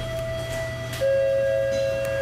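Two steady, sustained tones: one sounds from the start, and a second, lower and louder one joins about a second in, both held level over a low steady hum.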